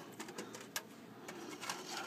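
Faint rustling and a few light, scattered clicks from paper slips being handled in a cardboard box as names are drawn.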